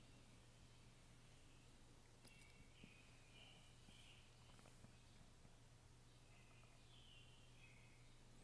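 Near silence: room tone with a faint steady low hum, a few faint high chirps and tiny clicks.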